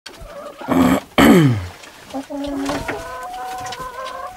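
Domestic hens calling in a coop: two loud squawks about a second in, the second one falling in pitch, followed by a longer, level call.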